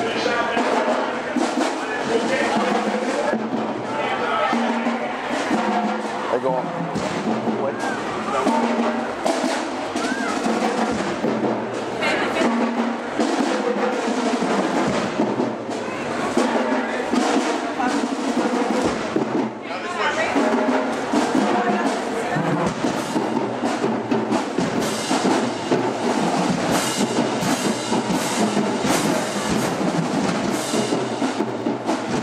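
Marching band drumline playing a marching cadence, snare and bass drums beating steadily, with people's voices mixed in.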